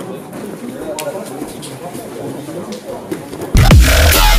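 Indistinct voices in a large training hall, then loud electronic music with a heavy bass starts abruptly about three and a half seconds in.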